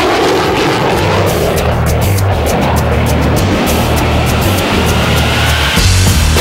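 A fighter jet flying past, its engine roar falling and then rising in pitch. Loud rock background music with a heavy beat plays under it and takes over near the end.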